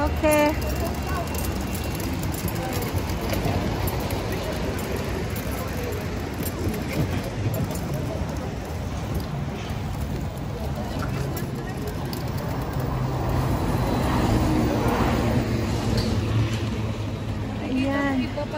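Busy city street ambience: a steady rumble of road traffic from passing cars and buses, with voices of passers-by. The traffic swells louder for a couple of seconds near the end.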